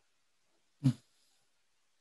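A single short vocal sound just under a second in, amid near silence.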